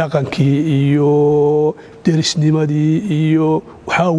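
A man talking in Somali, drawing out long, level-pitched held vowels, twice held for more than a second.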